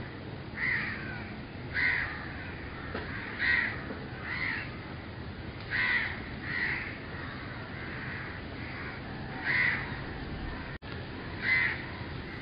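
Short bird calls repeated every second or so at uneven intervals, over a steady background hiss.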